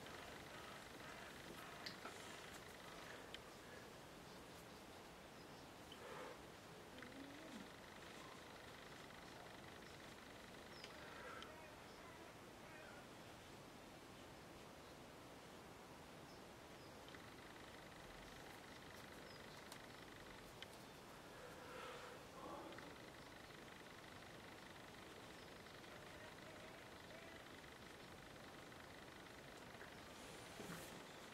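Near silence: room tone with a faint steady hiss and a few soft, faint ticks.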